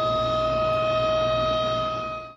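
Yom HaShoah memorial siren sounding one steady tone that does not rise or fall. It is the signal for the standing moment of silence in memory of the Holocaust victims.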